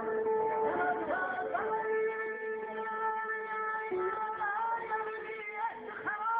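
Electric guitar playing a melody full of pitch bends and slides over a steady held drone note.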